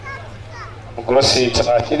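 A man talking into a microphone over a public-address system, starting about a second in; before that, faint background voices over a steady low hum.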